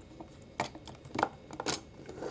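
Plastic parts of a Transformers Revenge of the Fallen 'The Fallen' Voyager-class action figure clicking as they are handled and moved, a few short, sharp clicks about half a second apart.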